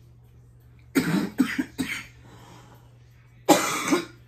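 A woman coughing: three quick coughs about a second in, then one more near the end. She has laryngitis.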